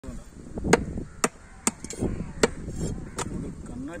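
A heavy knife chopping a whole fish on a wooden stump block: five sharp, irregularly spaced chops.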